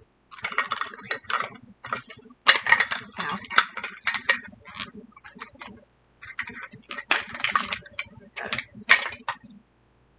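Thin plastic wrapping crinkling and tearing as a small sealed package is opened by hand, in irregular bursts of crackle with short pauses.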